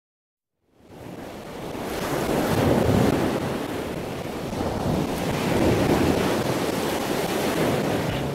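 Rush of ocean waves and wind, fading in from silence within the first second and swelling and easing twice, like waves surging.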